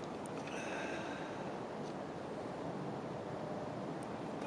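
Quiet, steady outdoor background noise in a snowy woods, with faint thin high tones that fade out about two seconds in.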